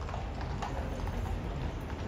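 Cavalry horses' hooves clip-clopping on stone paving, a few irregular strikes over a steady low rumble.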